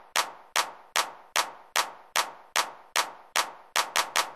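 A single sharp drum-machine percussion hit, snare- or clap-like, repeating on its own about two and a half times a second and quickening just before the end, like a build-up in an electronic track.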